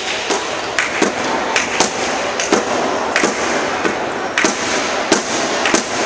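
Badminton rackets striking the shuttlecock in a fast doubles rally: about a dozen sharp cracks, roughly two a second, over the steady background noise of a sports hall.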